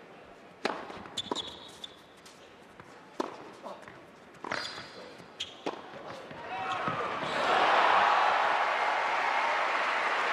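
Tennis point on an indoor court: a series of sharp tennis-ball bounces and racket hits with brief shoe squeaks. The crowd then breaks into loud cheering and applause about seven seconds in as the point ends.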